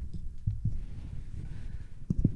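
Microphone handling noise: low rumbling with a few soft thumps as hands grip and adjust a microphone on its stand.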